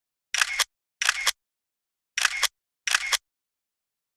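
Camera shutter clicks used as a photo-slideshow sound effect: four quick shutter releases in two pairs, with silence between them.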